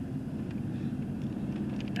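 Steady low hum and rumble of a car driving, heard from inside the cabin.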